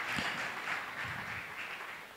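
A congregation clapping, the applause dying away and nearly gone by the end.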